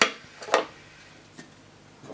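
Clicks of the front cover of a vintage Hoover Junior 1346 upright vacuum cleaner being unclipped and taken off: a sharp click at the start, another about half a second in, and a faint tap a little later.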